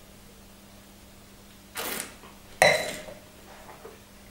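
A sip of red wine slurped with air drawn through it, a short hiss, then a louder sharp knock with a brief ring as the wine glass is set down.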